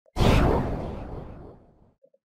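Intro logo sound effect: a whoosh that hits suddenly with a deep low end and fades away over about a second and a half.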